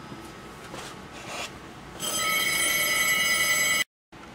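Telephone ringing: one steady ring of about two seconds, starting about halfway through and cut off abruptly.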